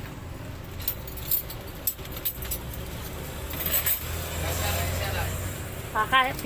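Light metallic clinks and rattles, a handful of sharp ones spread through, over a low steady hum.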